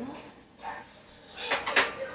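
Metal spoon clattering and clinking against hard kitchen surfaces: a short burst of sharp metallic clinks with a brief ring about a second and a half in.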